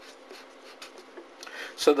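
Marker pen writing on paper: a faint scratching of several short strokes as a word is written out.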